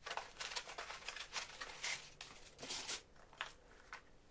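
Foam packing insert rubbing and scraping as it is pulled apart and the model engine on its wooden base is lifted out: a quick run of short rustling, scuffing handling noises that stops about three seconds in.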